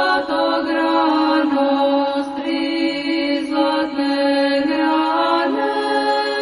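Orthodox Christian chant sung in long held notes over a steady lower tone, the pitch stepping up about five and a half seconds in.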